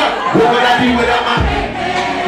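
Concert crowd cheering and singing along over live hip-hop music, with a deep bass hit about one and a half seconds in.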